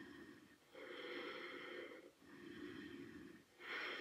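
A woman's faint, steady breathing, about four soft breaths of a second or so each, in and out, as she holds a core-strengthening seated balance pose.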